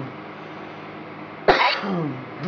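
Steady static hiss from the Necrophonic ghost-box app, broken about one and a half seconds in by a short, loud cough-like vocal sound.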